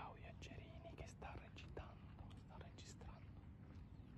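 Hushed, whispered voices of a few people talking quietly, faint over a low steady rumble.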